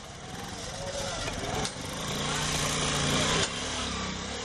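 Small motorcycle engine running, revving up for about a second and a half from around two seconds in, then easing back, amid street noise.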